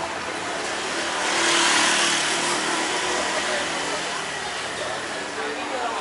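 A motorbike passing close by on the street, its engine and tyre noise swelling to a peak about two seconds in and then fading, over background street chatter.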